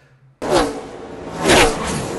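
Race broadcast audio of NASCAR stock cars going by at speed, cutting in abruptly about half a second in. Each car's engine note drops in pitch as it passes, loudest about a second and a half in.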